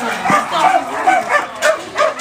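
Shelter dogs barking and whining, many calls overlapping without a break.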